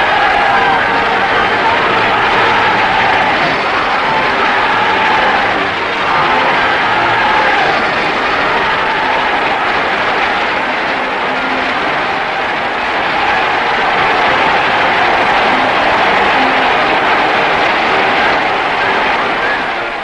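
Sustained applause from a large audience, steady and unbroken, with faint crowd voices in it.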